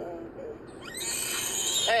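A small child's loud, high-pitched shriek that rises in under a second in and is held for about a second, after a brief vocal sound at the start.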